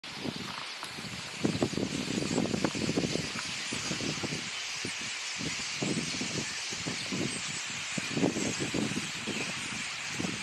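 Wind buffeting the microphone in uneven low gusts, over a steady high hiss.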